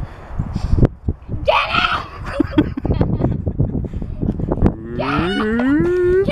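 A child's voice giving a short high squeal about a second and a half in, then a long wail rising steadily in pitch near the end, over a constant low rumble.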